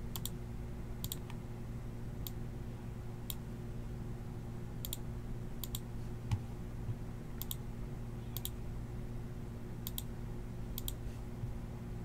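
Computer mouse button clicking: about eleven clicks at uneven intervals, most heard as a quick double tick of press and release, over a steady low hum. A soft bump comes just past the middle.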